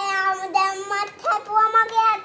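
A young child's voice singing in long held high notes, two in the first second and another from about a second and a quarter in.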